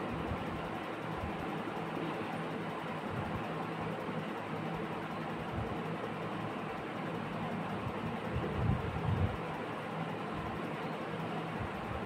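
Steady room noise with a low, even hum, and a few soft low knocks about eight to nine seconds in.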